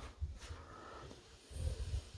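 Faint low handling noise and soft bumps as the hinged top lid of an upright piano is lifted open, with no notes played.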